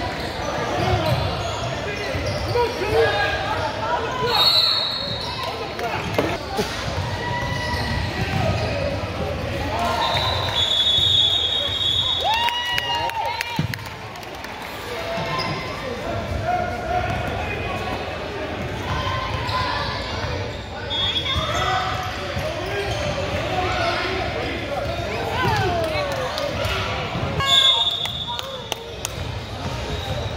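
Basketball bouncing on a gym court during a game, with indistinct voices of players and spectators echoing in the hall. A few short high squeaks come in now and then.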